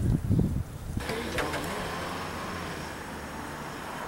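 Outdoor ambience: an irregular low rumble for about the first half-second, then, from about a second in, a steady even hiss with nothing standing out.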